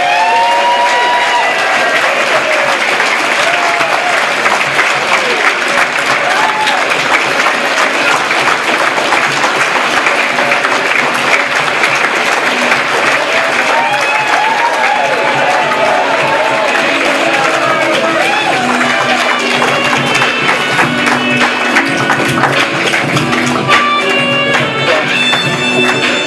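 Audience applauding over loud entrance music, with scattered whoops from the crowd. Music with steady held notes comes up near the end.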